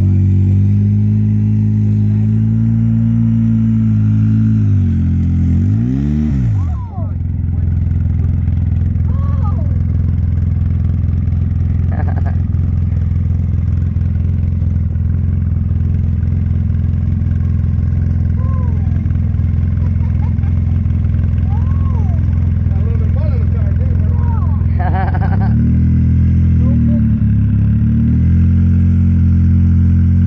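Side-by-side UTV engine revving in a mud hole. Its pitch rises and falls repeatedly, climbs sharply and drops off about seven seconds in, then holds a steady drone before rising and falling again near the end.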